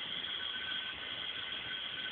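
Steady background hiss with a faint, thin high whine running through it, and no distinct sound event: the recording's own noise floor.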